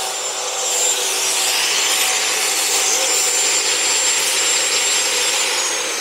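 Abrasive cut-off (chop) saw grinding through an iron bar: a harsh, steady grinding hiss with a thin high whine from the spinning disc. Near the end the whine starts to drop in pitch as the saw runs down.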